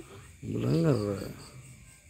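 A man's voice making one short, drawn-out wordless sound about half a second in, its pitch rising and then falling.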